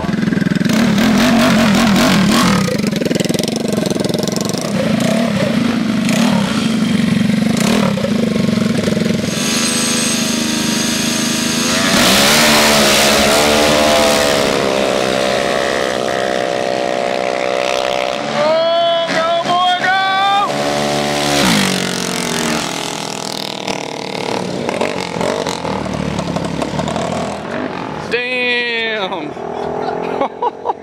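Small-displacement scooter and mini-bike engines in a street drag race: revving at the line, then running hard and accelerating away, their pitch climbing in long rising sweeps. One sharp falling sweep comes near the end, mixed with onlookers' voices.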